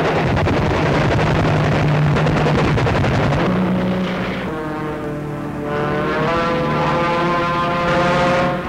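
Dubbed newsreel soundtrack of a dense, steady aircraft engine roar. About halfway through it thins and gives way to sustained musical chords that hold to the end.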